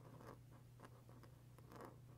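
Pen tip drawn across paper in a few short, faint strokes while colouring in hand-drawn letters.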